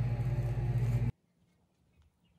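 A steady low engine hum with a haze of noise over it, which cuts off abruptly about a second in; near silence follows.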